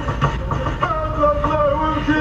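Moroccan madih devotional chanting with long held, slowly wavering notes, over the low rumble of road noise inside a moving car.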